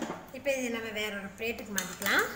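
A woman speaking, with a few clinks of metal utensils against a non-stick kadai as the spatula comes out and a pan holder grips the rim.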